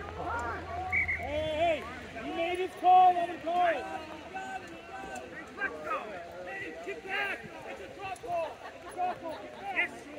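Several voices shouting and calling out across a rugby pitch, overlapping and partly distant, with the loudest call about three seconds in.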